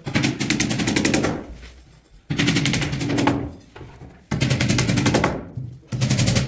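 A power tool with a rapid hammering action, such as an impact driver or hammer drill, running in three bursts of about two seconds each. Each burst starts abruptly and is a fast, even rattle of blows.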